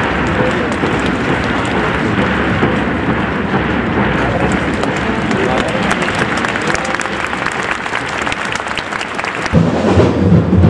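Football stadium crowd: a steady wash of clapping and voices. Just before the end, a heavy beat of low thumps, like supporters' drums, starts up.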